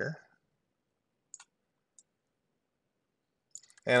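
Two short computer mouse clicks, a little over half a second apart, over near quiet.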